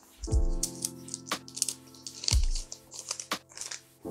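Background music with a steady beat: a deep kick drum about every two seconds and a sharp hit between them. Under it comes light crinkling from Pokémon cards and their plastic sleeves being handled.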